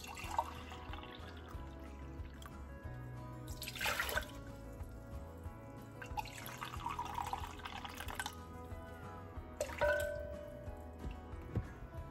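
Water poured from a glass jar into a measuring cup, trickling in a couple of runs, with soft background music underneath. A short ringing clink near the end.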